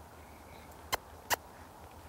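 Two sharp tongue clicks, the cluck a rider makes to urge a horse forward, about a second in and less than half a second apart.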